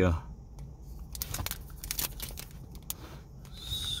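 Foil Pokémon TCG booster pack wrapper crinkling as it is handled and turned over in the hands, a scatter of small crackles.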